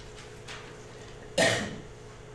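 A man coughs once, about one and a half seconds in, into a lectern microphone. Otherwise there is only low room tone.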